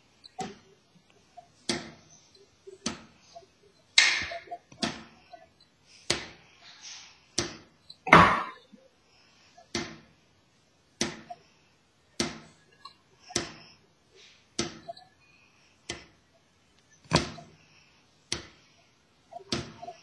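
Wooden drumsticks playing slow single free strokes on a snare drum, about one hit a second, each stick allowed to rebound off the head. The hits come through a Skype video call.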